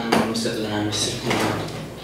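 Speech: two people talking in conversation.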